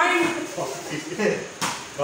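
Indistinct voices in a small hard-walled room, with one sharp knock about one and a half seconds in.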